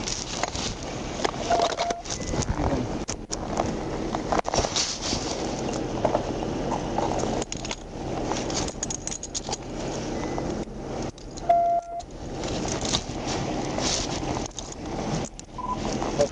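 Rustling and handling noise on a body microphone with metallic clinks, typical of handcuffs being put on a person lying on the ground. A short beep sounds about eleven and a half seconds in.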